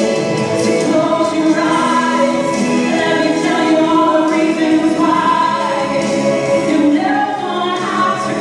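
A woman singing a melody into a microphone over musical accompaniment, with long held notes.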